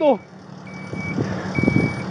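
A steady high electronic beep repeating in pulses of about half a second with short gaps, over a rustling rumble of movement against the microphone that grows louder through the second half. A shouted word ends just at the start.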